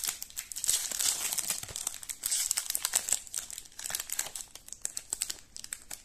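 Foil wrapper of a Topps Bundesliga Chrome trading-card pack crinkling as it is handled and torn open, a dense run of irregular crackles.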